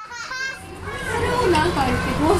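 Children's voices chattering and calling, starting faint and growing louder about a second in.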